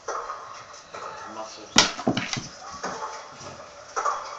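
Indistinct talking in the background, with one sharp knock a little under two seconds in.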